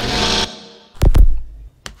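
Electronic logo-intro sound effects: a sudden hissy burst that fades over about half a second, then a sharp hit with a deep low tail about a second in, and a smaller click near the end.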